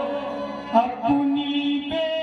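Qawwali music: harmonium notes held under a man's long sustained sung note, with one sharp percussive stroke about three-quarters of a second in.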